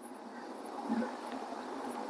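Faint, steady background noise with no distinct sound event.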